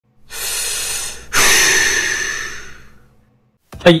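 Two whoosh sound effects over an intro logo: a first one about a second long, then a louder one that fades away over about a second and a half. A short spoken 'hai' comes at the very end.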